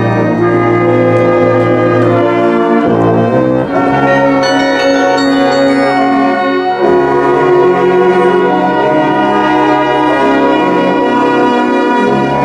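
Carillon bells of the Douai carillon played from its baton keyboard, with brass instruments playing long held notes alongside, in one continuous piece of music.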